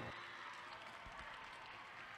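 The music's last note cuts off, followed by faint scattered applause from an audience.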